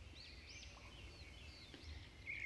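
Near silence: room tone with faint, high, short chirps of small birds in the background.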